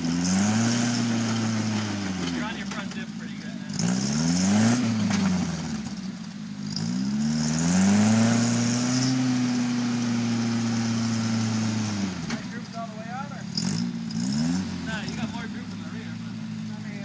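Rock crawler buggy's engine revving in several bursts while it climbs a rock ledge: short revs rising and falling, and one long rev held for about four seconds in the middle.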